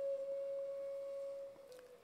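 Public-address feedback: a single steady, whistle-like pure tone that holds for about a second and a half, then dips slightly in pitch and fades out.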